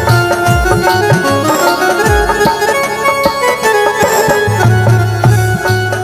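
Instrumental interlude of a live Rajasthani devotional bhajan: a sustained reed melody, harmonium-like, over a drum whose deep strokes slide down in pitch every second or two.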